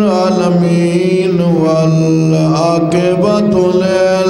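A man's solo voice chanting an Arabic invocation through a microphone in long, drawn-out melodic notes. The pitch slides down through the middle and climbs again about three seconds in.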